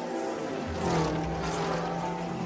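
A racing car's engine passing at speed. It swells to its loudest about a second in, and its pitch falls as it moves away.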